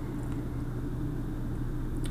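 Steady low background hum with faint even hiss, with no distinct events: the room and microphone noise under a paused voice-over.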